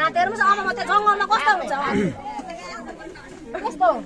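Speech only: a woman talking, with other voices of a crowd chattering around her.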